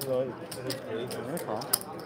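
Poker chips clicking against one another, with a run of small clacks and one sharp, louder clack near the end, under background table chatter.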